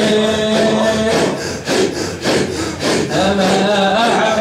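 Group of men performing Sufi hadra dhikr in unison: a held chanted note breaks about a second in into roughly two seconds of rasping breath-chanting, forceful rhythmic exhalations from the chest in a quick, even beat, before the sung chant resumes near the end.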